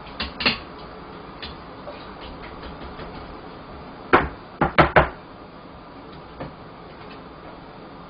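Metal mesh strainer of blanched greens lifted from boiling water and knocked against the rim of the aluminium pot: four sharp knocks about four to five seconds in, after a couple of lighter clicks near the start.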